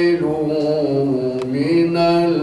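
A man reciting the Quran in a melodic chant, drawing out long held notes that glide slowly from one pitch to the next.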